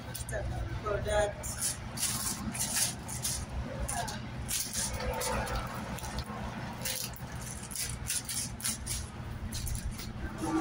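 Indistinct voices over a steady low hum, with scattered light clicks and rustles.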